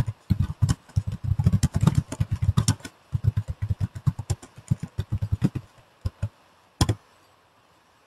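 Computer keyboard typing: quick keystrokes in a steady run for about six seconds, then one last sharper tap near the end.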